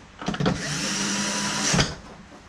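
Cordless electric screwdriver running in one steady burst of about a second and a half, driving a screw into the plastic back cover of a TV.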